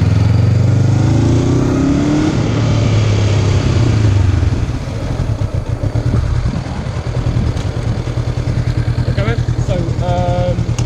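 Honda CB500F parallel-twin engine running at low revs with a slight rise in pitch, then dropping at about four and a half seconds to a steady, pulsing idle as the bike stops. A voice starts near the end.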